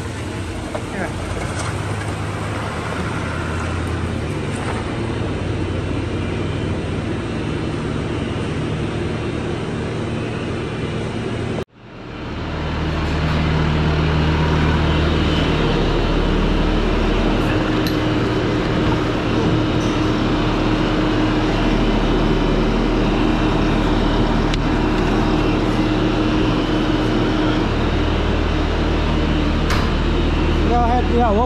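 A vehicle engine idling steadily, then after an abrupt cut a Bobcat compact track loader's diesel engine running steadily and louder, with a deep hum, inside a garage.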